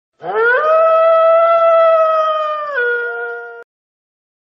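A long animal howl: it rises in pitch over the first half-second, holds one steady note, then drops to a lower note near the end, where a second, higher tone joins briefly before it cuts off suddenly.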